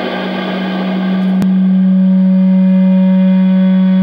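Distorted electric guitar sustaining one low note that swells over the first two seconds and then holds steady, with a single sharp click about a second and a half in.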